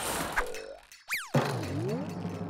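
Cartoon boing sound effects over a short, playful music sting, with a fast swooping pitch glide a little after a second in and a quicker rising boing near the end.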